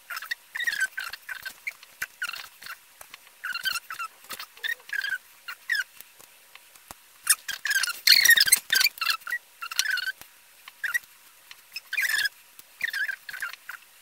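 Scallop shells being shifted and pressed down onto adhesive stop dots on a wooden tabletop. It is a run of short squeaky scrapes and light ticks, with a denser crackly cluster about eight seconds in.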